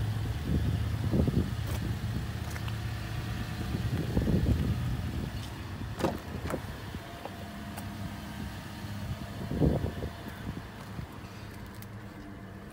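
A car door opened by its handle, the latch giving a sharp click about six seconds in. Rustling and a few dull thumps come from moving around and getting into the car, over a low steady hum.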